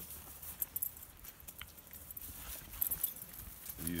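Footsteps on grass with light scattered rustling and crackling, over a low rumble of wind on the microphone.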